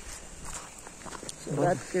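Faint footsteps of people walking on a dirt trail, a few soft steps, before a man starts talking about a second and a half in.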